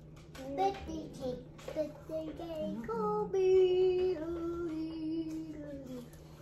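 A young child singing wordlessly, the tune ending on one long held note that slowly sinks in pitch.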